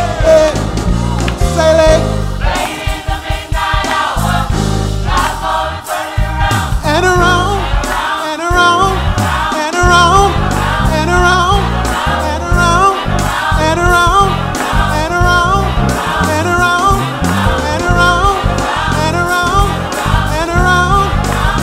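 Gospel choir singing a praise song with a male lead singer on microphone, over a band with a bass line moving in steps underneath.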